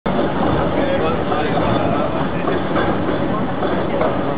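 City tram running past close by over steady street noise, with indistinct voices.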